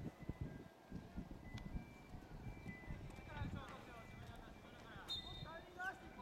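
Distant shouts from players calling to each other across a soccer pitch, coming in short bursts a few seconds in and again near the end, over uneven low rumbles and thuds.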